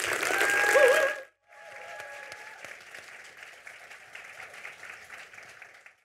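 Audience applauding at the end of a talk, loud at first. The sound cuts out briefly a little over a second in, and the applause then carries on more softly.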